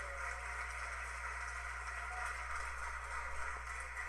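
Stock sound effect of a large crowd applauding, played back as a recording, a steady even clapping that stays faint.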